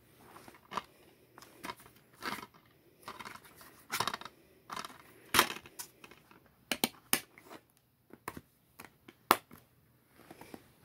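Plastic DVD case being opened and handled, with an uneven run of sharp clicks and snaps as the disc is worked off its centre hub; the loudest snaps come about halfway through and near the end.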